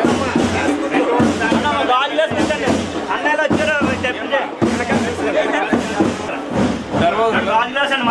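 Several voices talking, with background music under them.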